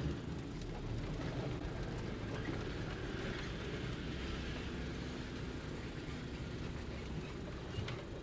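Pickup truck driving slowly over grass, its engine running steadily at low speed.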